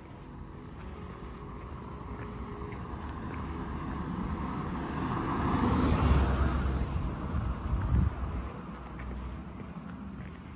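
A vehicle passing by, its noise swelling slowly to a peak about six seconds in and then fading away, with wind buffeting the microphone.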